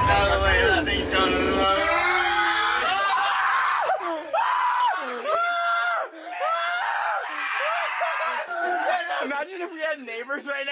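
Young men shrieking and yelping in high, wavering voices, mixed with laughter, as they scramble to grab a loose rat. Background music with a low beat fades out in the first two seconds.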